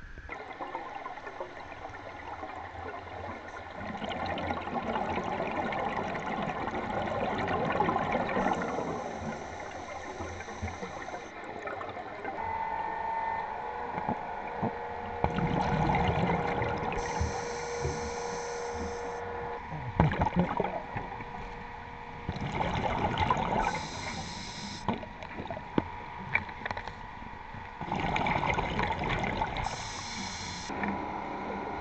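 A surface-supplied diver breathing underwater: a surge of exhaust bubbles every six or seven seconds, with a sharp hiss of breathing gas between them.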